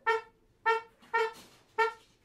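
Trumpet playing short, detached notes on one repeated pitch, four in the space of two seconds, with nothing else in the band sounding between them.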